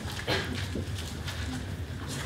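A marker writing on a whiteboard: a run of short strokes and taps over a steady low room hum.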